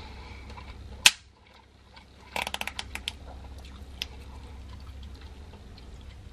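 A small plastic ketchup-and-mustard condiment packet snapped open with one sharp crack about a second in. Then a quick run of crackling clicks as the plastic is bent and squeezed, and one more click a second later.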